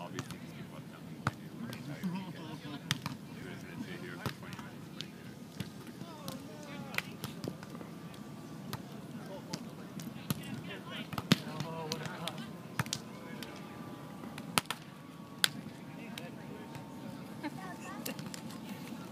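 A volleyball being played by hand: a series of sharp, irregularly spaced slaps of hands striking the ball in passes, sets and hits, the loudest about eleven seconds in. Voices in the background.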